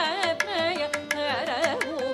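Carnatic vocal music: a woman sings a phrase full of sliding, oscillating ornaments (gamakas) over the steady drone of a tanpura. Sharp percussion strokes keep time several times a second.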